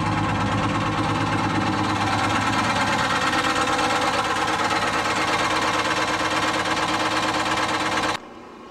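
Detroit Diesel 71-series two-stroke diesel engine running steadily, with a fast, even beat. It has a new injector in a cylinder that had not been firing, but it still smokes, and the owner suspects a bad valve on that cylinder.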